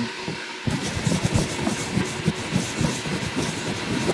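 Handheld camera's lens being wiped clean on a shirt: close, irregular rubbing and scuffing of fabric over the camera body and microphone, starting about a second in.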